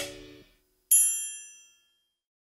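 The last note of a chanson song fades out in the first half-second. About a second in, a single bright, high bell-like ding sounds and rings away within about a second.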